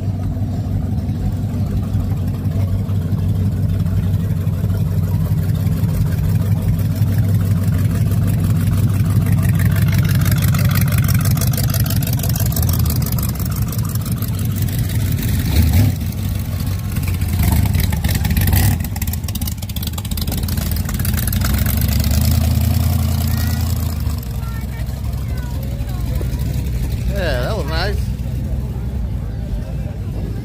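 Engines of classic cars moving slowly past at a car show, a steady low sound that swells twice, with a crowd talking.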